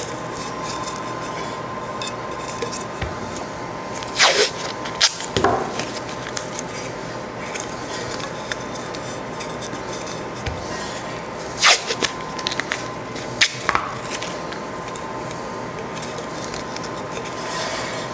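FrogTape painter's tape being peeled off the roll in short strips to line a stainless steel tumbler's rim: four quick rips, two in the first six seconds and two more about twelve and fourteen seconds in. A steady hum runs underneath.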